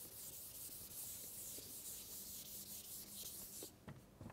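Something rubbing on a chalkboard: a faint, steady scrubbing hiss that stops shortly before the end.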